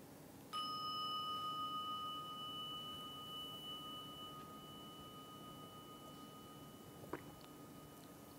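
A meditation bell struck once, ringing with a clear, slowly fading tone that lasts for several seconds; it signals the end of a guided meditation. There is a light knock near the end.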